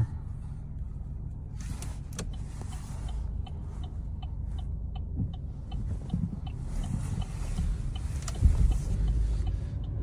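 Low, steady rumble of a car's engine and road noise heard from inside the cabin as it moves slowly, with a run of faint, evenly spaced ticks, about three a second, through the middle and a louder low bump near the end.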